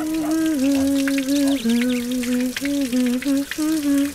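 A woman humming a tune in held notes that step up and down, over running shower water splashing on her.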